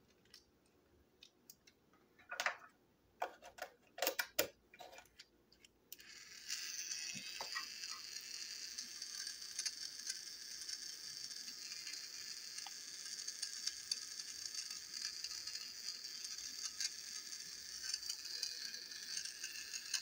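A few clicks and knocks, then about six seconds in the small battery-powered electric motor and plastic gears of a 2007 Tomy Fearless Freddie toy engine start a steady high whir as its wheels spin freely in the air. The motor runs on until the very end, showing the toy works with its fresh battery.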